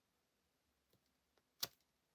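Near silence with a few faint ticks, then one short, sharp click about one and a half seconds in as a clear acrylic stamp block is lifted off the card.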